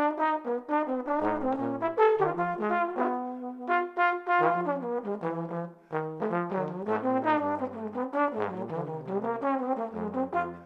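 Two trombones playing a blues together, moving through many quick notes, often with one horn on low notes under the other's line.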